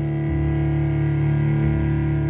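Slow, dark music of long sustained notes with no singing, the low bass note changing about a third of a second in and again near the end.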